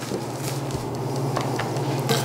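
Steady low hum, with a couple of faint ticks of a knife touching a stainless steel table as meat is trimmed.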